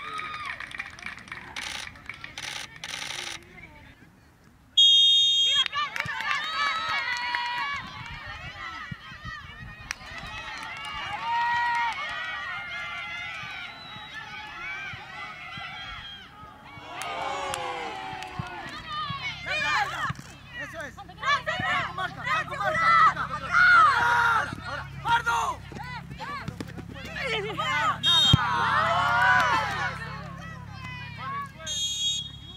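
High-pitched voices of players calling and shouting across a football pitch, with a short referee's whistle blast about five seconds in.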